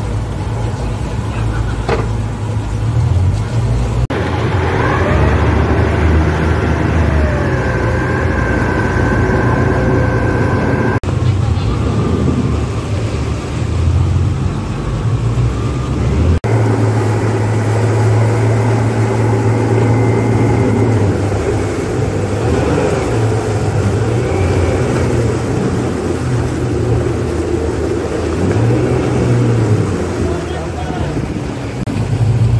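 A bank of 250 hp outboard motors running at low speed with a steady low hum. The sound cuts off and changes abruptly three times.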